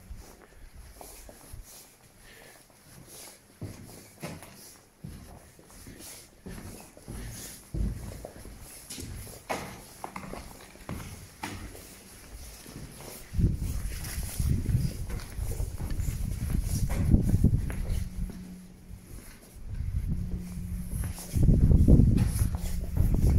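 Footsteps with scattered knocks and clatters. About two-thirds of the way in, a loud, uneven low rumble sets in, with a steady low hum near the end.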